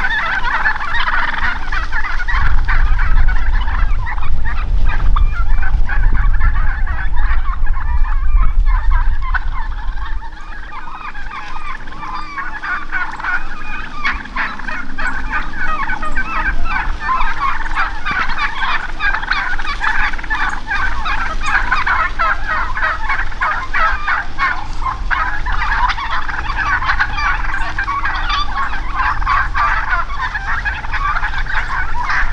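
A flock of wild turkeys calling continuously, many birds overlapping in a dense chatter. A low rumble runs under the calls over roughly the first ten seconds and is the loudest thing there.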